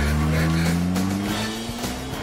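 Car engine revving as the car is driven away, its note rising steadily.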